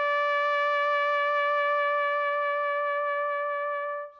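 Solo trumpet holding one long, steady note at the top of a short rising phrase, fading out at the end.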